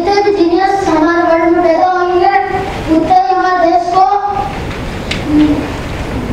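A boy singing unaccompanied, holding long, slightly wavering notes for about four seconds, then pausing and singing one short note near the end.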